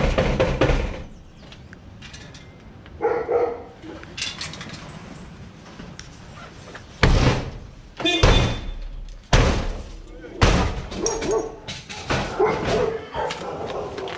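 Heavy blows against a sheet-metal door as it is forced open, four strikes a little over a second apart in the second half, each a sharp bang.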